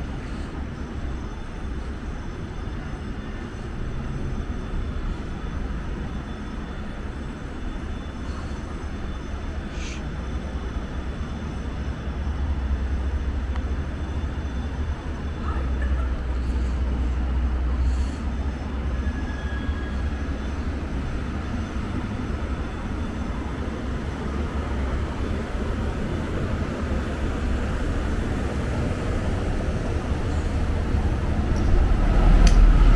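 Steady low rumble of city traffic, growing louder toward the end as a city bus approaches along the road.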